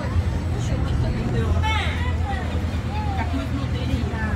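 Indistinct voices talking, over a steady low hum.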